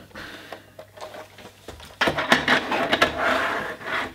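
Plastic plug-in 20-channel multiplexer module being handled and slid into the rear slot of a Keysight DAQ970A data acquisition mainframe: a few light clicks, then from about halfway a scraping slide with rattles lasting nearly two seconds.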